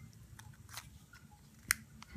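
Origami paper being folded and creased by hand: faint rustling, with one sharp click about three quarters of the way through.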